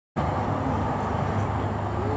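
A steady low rumble with a constant hum underneath, starting suddenly just after the beginning.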